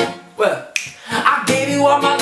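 Acoustic guitar strumming breaks off for about a second, sharp finger snaps sound in the gap, and the strumming picks up again about one and a half seconds in.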